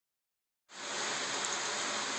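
A steady, even hiss that starts suddenly about two-thirds of a second in, after a moment of silence.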